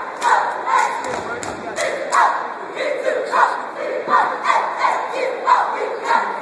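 Two college cheerleading squads shouting a cheer together in rhythm, with sharp claps and stomps, echoing in a gymnasium.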